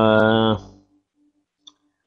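A man's voice holding one drawn-out syllable, a hesitation in speech, which fades out about half a second in. Then near silence with one faint short click near the end.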